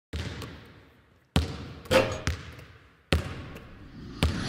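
A basketball bouncing on a hard floor, five separate bounces at uneven intervals, each ringing out with an echoing decay.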